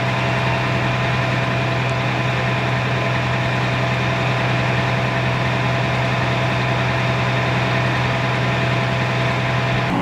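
Fire engine's diesel engine running steadily close by, a constant low hum with a few steady higher tones over it.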